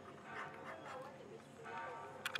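Faint human voices, talking or calling in the distance.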